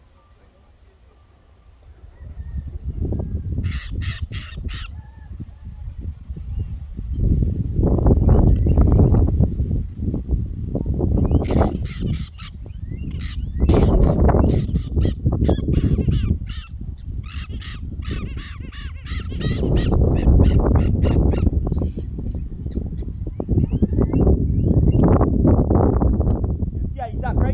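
A bird giving rapid, harsh squawking calls in quick runs: a short run about four seconds in and longer runs through the middle. Loud rustling and buffeting noise runs underneath.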